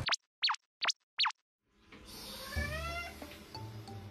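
Four quick cartoon-style sound effects, each a short swooping pitch sweep, in the first second and a half with dead silence between them. Then light background music fades in, with a rising sliding figure.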